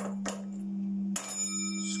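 Small brass singing bowl struck twice, about a second apart, each strike ringing on with several high, clear overtones over a steady low hum.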